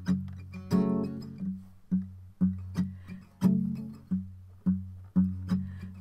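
Acoustic guitar playing the intro to a song: chords strummed about twice a second over a repeating low bass note.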